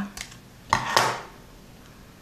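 Small scissors snipping through a thin strip of painted cardboard, a short sharp cut about three-quarters of a second in, trimming a piece that came out too long.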